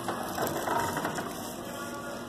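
A quick run of ratchet-like clicks and rattling, dying away after about a second and a half.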